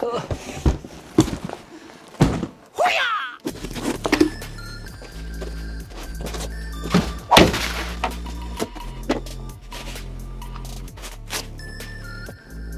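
Thuds and knocks of a large cardboard chair box being set down and handled, with a brief scrape near three seconds. Then background music with a steady low beat comes in, about three and a half seconds in, over occasional sharp knocks as the chair parts are handled.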